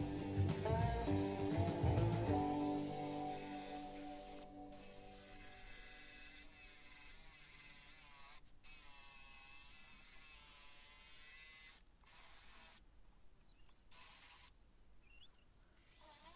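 Guitar background music fades out over the first few seconds. Then the faint buzz of a cordless jigsaw cutting pallet wood, cut off abruptly several times near the end.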